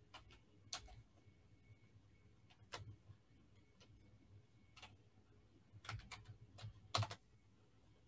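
Computer keyboard keys tapped slowly and faintly: a few single keystrokes spread apart, then a short run of taps near the end, the last one the loudest.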